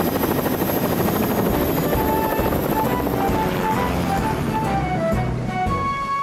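A helicopter's rotor and turbine run steadily as a cartoon sound effect, with a high whine that fades about halfway through. Background music comes in about two seconds in, with a short falling run of notes.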